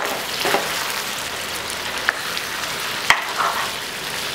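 Chicken pieces sizzling in a non-stick pan as they are stirred with a spatula, with a steady frying hiss under a few sharp knocks of the spatula against the pan, the loudest a little after three seconds in.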